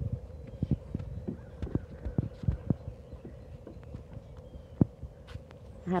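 Irregular soft thumps and taps of footsteps and movement on a deck floor, several a second at first, then sparser, with one sharper knock near the end. A faint steady hum runs beneath.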